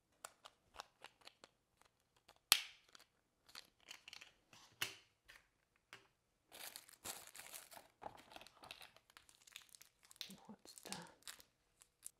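Paper packaging being handled and unwrapped: soft crinkling and rustling of a paper envelope and wrapping, with scattered small clicks and one sharper click about two and a half seconds in.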